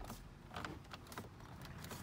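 Plastic dash trim bezel being pressed into place by hand: a few faint clicks and taps as its retaining clips and edges seat.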